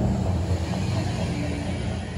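A steady low rumble with an even hiss above it, growing slightly softer toward the end.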